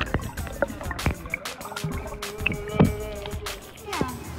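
Muffled underwater sound picked up by a phone held under pool water: water moving, with many small clicks and pops of bubbles.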